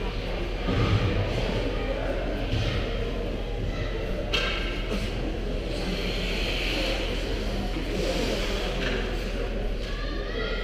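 Echoing ice-rink ambience during a youth hockey game: spectators' chatter blends into a steady murmur, along with players skating and sticks on the ice, and a dull thud about a second in.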